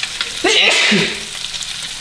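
White bass fillets frying in butter and olive oil in a hot pan, a steady crackling sizzle, with a man coughing once about half a second in. The cough is set off by the spicy blackening seasoning.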